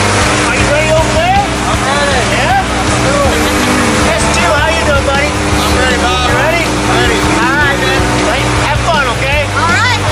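Steady drone of a propeller jump plane's engines heard from inside the cabin, with people's voices talking over it.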